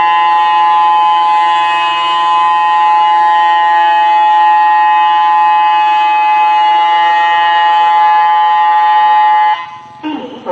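Tsunami early-warning siren sounding a test: one loud, steady, unwavering tone held for about nine and a half seconds, cutting off suddenly near the end.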